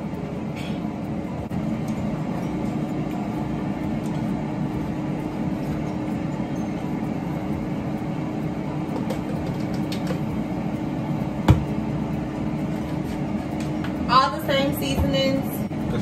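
A kitchen appliance's fan running with a steady, even hum and a constant low tone, with a single sharp click about three quarters of the way through.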